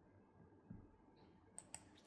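Near silence: room tone with a few faint, short clicks, two of them close together near the end.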